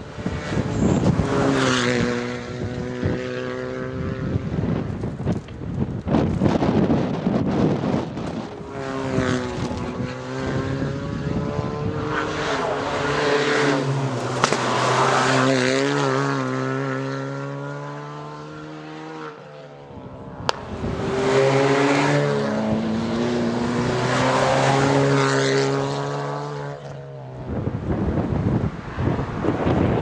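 Suzuki Swift Sport Hybrid rally cars, with 1.4-litre turbocharged four-cylinder engines, driven hard through the gears. The engine note climbs and drops with each shift and swells and fades as the cars pass, three times over.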